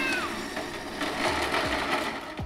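Razor Crazy Cart, overvolted on a 36 V battery, driving on its electric motor: a steady whine over a rough rolling noise.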